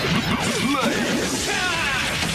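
Tokusatsu transformation sound effects: layered arching electronic sweeps that rise and fall in pitch, with crashing hits, over a music score.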